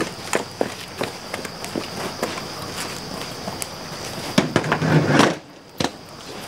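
Irregular sharp clicks and pops as insects strike and burn on a hot film light, with a steady thin high tone behind them. The clicks bunch up and get louder a little before the end, then briefly stop.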